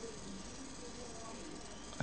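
Faint, steady background hiss with no distinct event.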